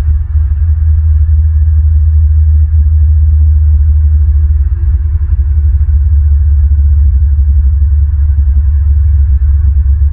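Loud, unsteady low rumble on an outdoor nest-camera microphone, typical of wind buffeting the mic.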